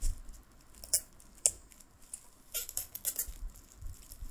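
A clear plastic bag crinkling and rustling as hands pull it off a paperback book. There are two sharp clicks about a second in, then a cluster of crinkles past the middle.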